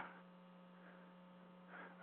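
Near silence, with only a faint steady electrical hum on the audio line.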